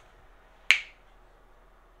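A single sharp snap about two-thirds of a second in, over quiet room tone.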